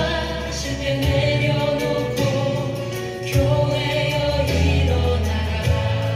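Christian worship song: a choir singing held notes over a steady, sustained bass accompaniment.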